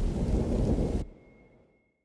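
Low rumbling noise, an edited-in sound effect, that cuts off about a second in, leaving silence where the music drops out.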